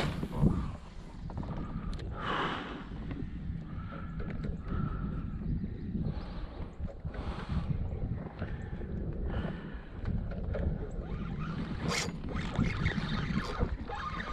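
Steady low rumble of wind on the microphone, with scattered small knocks and rustles of fishing gear being handled in the kayak and a sharper click about twelve seconds in.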